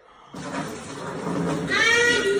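Liquid pouring steadily from a plastic bottle into a leather handbag. Near the end a loud, high-pitched, wavering cry from a woman starts over it.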